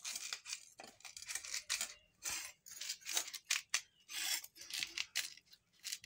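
A knife blade cutting through a firm green guava, a run of short, crisp scraping cuts, about two or three a second.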